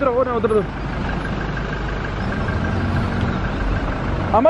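Toyota Innova MPV's engine running at low revs with a steady low rumble as the vehicle crawls slowly down a steep gravel track.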